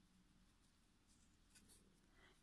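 Near silence, with faint soft rustles of cotton yarn being drawn through with a crochet hook, a few short ones near the end.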